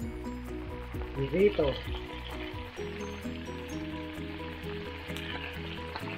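Pork adobo pieces sizzling in shallow oil in a nonstick frying pan: a steady frying hiss as the already-cooked meat is crisped.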